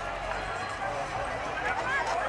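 People's voices talking and calling out, not close to the microphone, with steady background noise.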